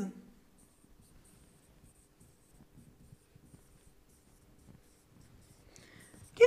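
Faint stylus strokes on an interactive touchscreen board as handwriting is traced across the screen, in a series of short strokes.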